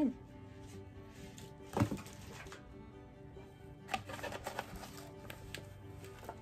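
A cardboard gift box and its contents being handled over background music: one sharp knock about two seconds in, then a run of light taps and rustles around four to five seconds in.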